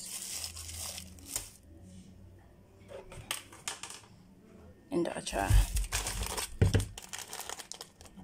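Thin plastic bags crinkling and rustling as they are handled and put down on a counter. The loudest rustles come about five to seven seconds in, with a couple of dull knocks.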